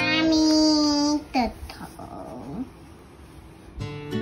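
A small child's voice holds a loud sung or called 'ah' for about a second, then slides down and fades. Acoustic guitar music comes in near the end.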